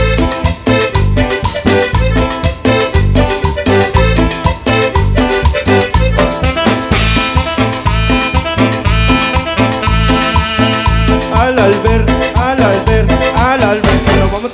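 A live tropical dance band plays an instrumental passage: an electronic keyboard lead over electric bass, electric guitar and drums, with a steady dance beat. Sliding, bending notes come in near the end.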